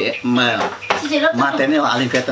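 A man talking continuously, with a single sharp click about a second in.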